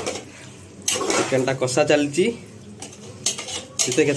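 Metal spoon scraping and knocking against the inside of an aluminium pressure cooker while stirring thick chicken curry, with a few sharp clinks.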